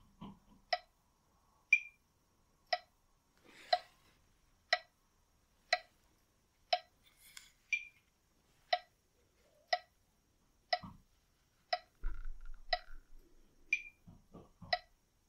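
Metronome ticking once a second, with an accented click of a different pitch on every sixth beat that marks the switch between in-breath and out-breath.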